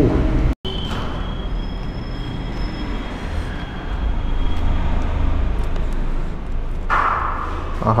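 Steady low rumble of background noise that cuts out for a moment just after the start, with a faint high steady tone over the first few seconds and a brief burst of noise near the end.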